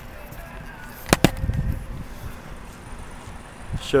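Climbing a motorhome's metal rear ladder: hands and feet knock on the rungs, with two sharp clanks close together about a second in, over a low rumble.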